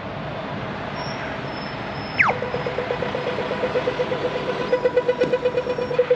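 Australian audio-tactile pedestrian crossing signal changing to walk: about two seconds in, a falling 'pew' chirp, then rapid, evenly spaced ticking that signals the walk phase. Road traffic runs underneath.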